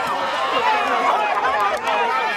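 Crowd of kabaddi players and spectators shouting and yelling over one another during a tackle on a raider.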